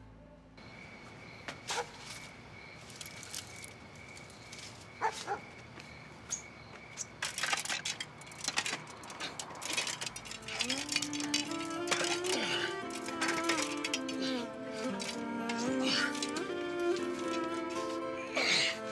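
Dramatic background score: a faint held high tone, then from about ten seconds in, string music with sliding melodic lines. Scattered rustles and knocks of someone climbing a wooden balcony railing run through it.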